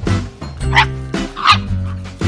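Background music with a steady bass line, over which a chihuahua–miniature pinscher mix puppy yips twice, about a second in and again near the end.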